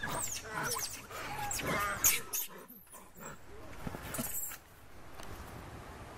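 Macaques squealing: a run of short, high-pitched calls that rise and fall, loudest in the first two seconds, with a sharp knock about two seconds in. The calling dies down after about four and a half seconds.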